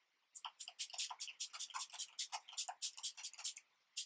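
MAC Fix+ setting spray's finger-pump mister sprayed over and over in quick succession, a short hiss of mist with each pump, about seven a second, stopping briefly near the end.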